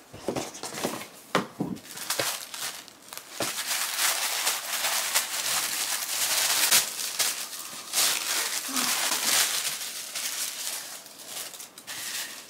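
Tissue paper rustling and crinkling as a gift box is unpacked, with a few sharp clicks and knocks from handling the box in the first two seconds.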